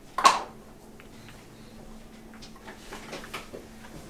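A short breath sound from a person tasting from a small glass of liqueur, about a quarter-second in, then quiet room tone with a faint steady hum and a few small clicks.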